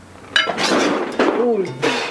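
A man gagging and spitting out a mouthful of food in disgust. There are two loud spluttering bursts mixed with voiced retching noises, the first starting about a third of a second in and the second near the end.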